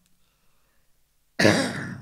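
A man's single cough into his fist: near silence, then one sudden loud cough about one and a half seconds in that quickly fades.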